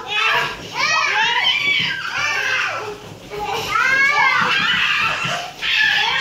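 Toddlers playing together: high-pitched children's voices calling out and chattering, with excited calls that swoop up and down in pitch.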